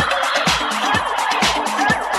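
House-style dance music from a DJ set over PA speakers: a steady four-on-the-floor kick about two beats a second, with short warbling, chirping sounds over it that resemble gobbling.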